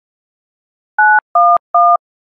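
Three touch-tone keypad beeps from a mobile phone dialing 9-1-1, each a short two-note tone, in quick succession. The first beep (the 9) is higher than the two identical beeps after it (the 1s).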